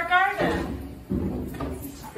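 A person's drawn-out voice, held on one slightly rising pitch, breaks off about half a second in. A thump follows about a second in, with faint indoor shuffling after it.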